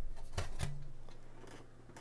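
A 2015 MacBook Air's aluminium bottom case being pulled straight up off the chassis, giving a few sharp clicks in the first half second or so as it comes free.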